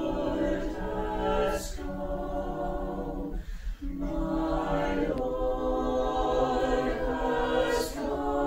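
Mixed choir of men's and women's voices singing a cappella in parts, holding sustained chords. The singing breaks off briefly for a breath about three and a half seconds in, then resumes.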